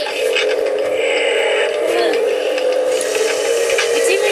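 Spirit Halloween Demonica animatronic playing its spooky audio: a steady electronic drone with a distorted, voice-like sound bending slowly in pitch over it.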